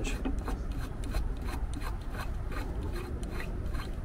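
A metal 16-flute pipe beveler being threaded by hand onto the flange of a stopped chop saw: irregular small clicks and scraping of metal threads, with gloved hands rubbing on the blade.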